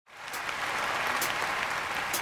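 Audience applauding, with two sharp ticks about a second apart from the drummer's count-in cutting through it.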